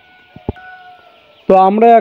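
A quiet stretch with a faint steady tone and two brief clicks, then a man starts speaking near the end.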